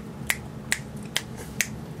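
Fingers snapping at a steady pace, about two snaps a second, four sharp snaps in a row.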